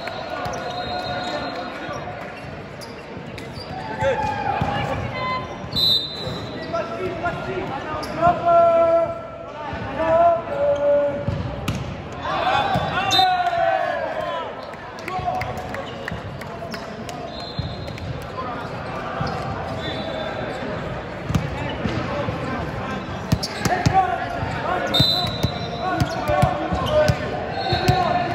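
Echoing sports-hall sounds during volleyball play: volleyballs being struck and bouncing on the hard court floor, mixed with players' shouts and calls around the hall.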